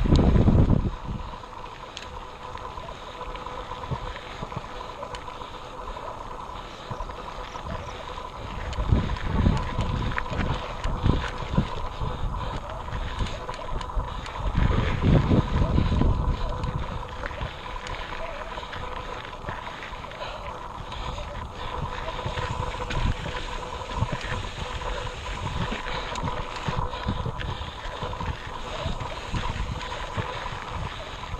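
Mountain bike riding up a rocky dirt trail, heard from a camera on the bike: rolling and rattling noise with gusts of wind on the microphone at the start, about nine seconds in and about fifteen seconds in. A faint steady high tone runs underneath.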